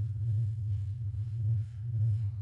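A low, steady droning hum with faint wavering tones above it.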